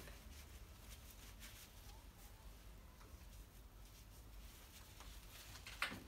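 Near silence: room tone with a faint low hum, and a brief soft noise near the end.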